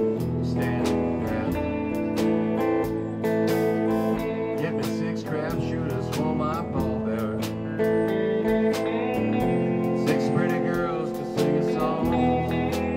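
Live blues band playing an instrumental passage: electric guitar with bent, wavering notes over keyboard and a drum kit with cymbals.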